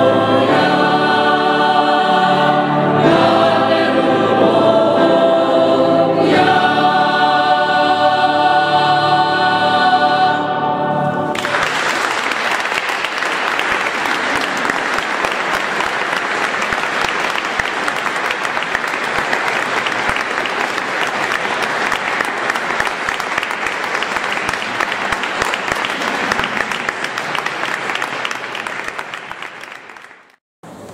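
A mixed choir sings sustained chords that end about a third of the way in, and the audience then claps, the applause tapering off near the end.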